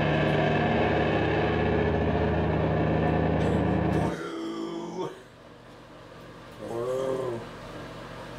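A live band's final distorted electric-guitar chord rings out loud and steady over deep low notes, then cuts off abruptly about four seconds in. A brief voice follows near the end.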